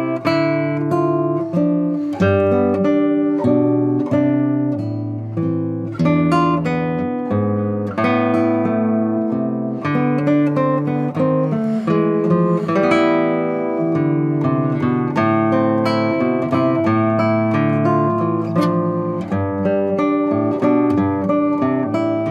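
Solo nylon-string classical guitar played fingerstyle: a continuous flow of plucked notes and arpeggiated chords, each note ringing on under the next.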